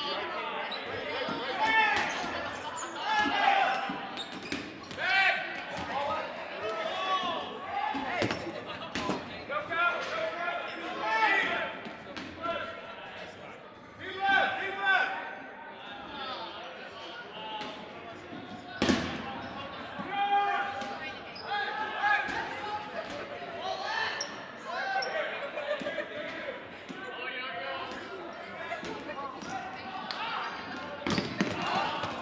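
Dodgeball game in a gym: players' voices calling out over the reverberant hall, with dodgeballs smacking and bouncing on the hardwood floor, including a sharp hit a little past the middle.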